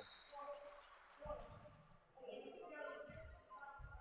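Faint thuds of a basketball bouncing on a hardwood gym floor, three separate bounces, with faint voices from the court in the hall.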